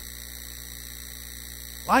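Steady electrical mains hum with faint hiss from the recording equipment, heard in a pause between words; a voice begins right at the end.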